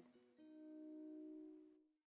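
Faint background music: a single chord of a plucked string instrument, held for about a second and a half and fading out.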